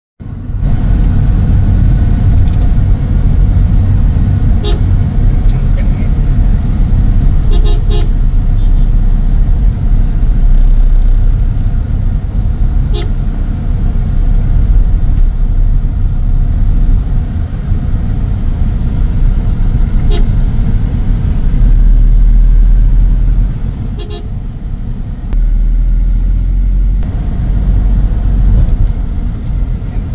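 Steady low rumble of road and engine noise inside a car moving through dense city traffic, with several short horn toots from the surrounding cars and motorbikes.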